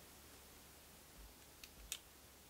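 Near silence, with two small clicks near the end as a screw and the metal hard-drive caddy are handled.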